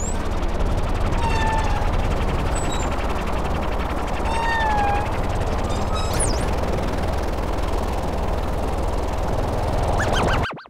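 Experimental electronic soundtrack: a loud, dense crackling rattle with wavering electronic tones that bend up and down, twice in the middle register and once as a high swoop about six seconds in.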